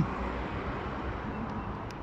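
Steady city street background with a low hum of distant traffic.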